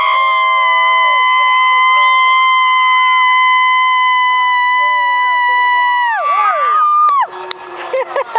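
Car engine held at high revs during a burnout, a loud steady high-pitched drone for about six seconds. The revs then drop, rise briefly again and cut off about seven seconds in.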